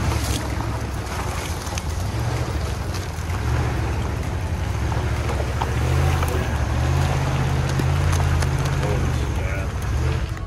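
Pickup truck's engine pulling hard under load as its tyres churn through deep mud, with mud and grit spattering against the body and wind on the microphone. The engine note grows louder a few seconds in and holds steady.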